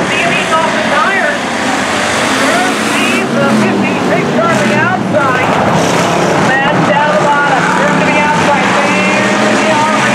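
Engines of dirt-track hobby stock race cars running steadily at speed as the field goes around, with a voice over the track's public-address loudspeakers throughout.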